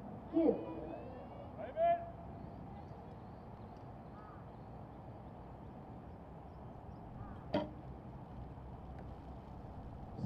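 A recurve bow shot: one sharp snap of the string released from full draw, about seven and a half seconds in. Two short calls come earlier, in the first two seconds.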